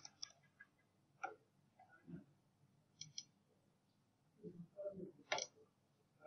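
A few faint, isolated clicks of computer keyboard keys and a mouse button, spaced a second or more apart with quiet between.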